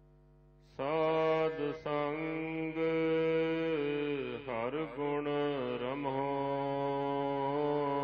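A voice chanting Gurbani in long, held melodic notes, starting about a second in after a short pause, with the pitch dipping and rising again about halfway through.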